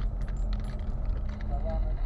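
Car cabin noise while driving slowly over a rough, potholed dirt road: a steady low rumble from the engine and tyres, with light rattling and clinking from loose items in the cabin as the car jolts.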